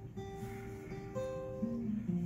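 Acoustic guitar being strummed, its chords ringing on and changing every half second or so.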